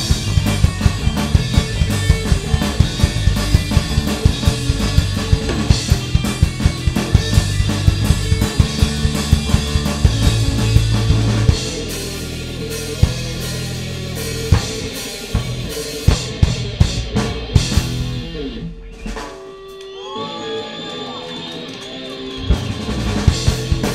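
A live punk-hardcore band playing an instrumental passage on drum kit and electric bass, the drums hitting steadily. About halfway through the heavy low end drops out, leaving the drums to carry on more lightly, and near the end the playing thins to a quieter stretch with sliding pitched notes.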